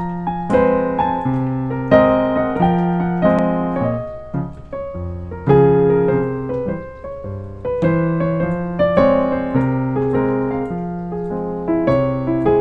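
Solo piano playing a song's instrumental introduction: chords and bass notes struck in a steady rhythm, each ringing and fading before the next.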